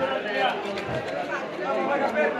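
Background chatter of several people talking at once, with a few faint sharp clicks.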